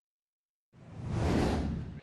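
Dead silence, then about three-quarters of a second in a whoosh sound effect swells up to a peak and eases off: the transition sting of a broadcast graphics wipe between race clips.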